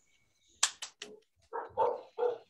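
Three sharp clicks, then a dog barking two or three short times.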